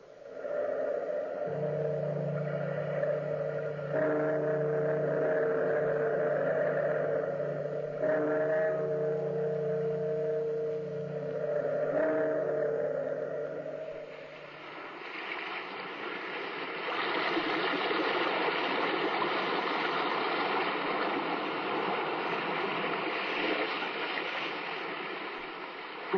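A deep bell tolling, struck four times about four seconds apart, each stroke ringing on into the next. The tolling dies away about halfway through and a steady rush of ocean surf fills the rest.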